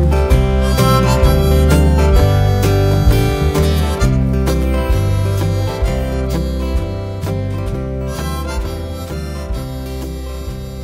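Folk instrumental: harmonica playing over acoustic guitar, slowly fading out.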